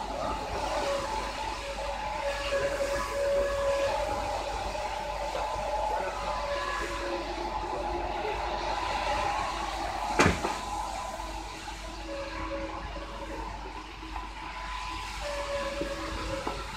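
Steady outdoor background noise with faint wavering tones, broken by a single sharp bang about ten seconds in.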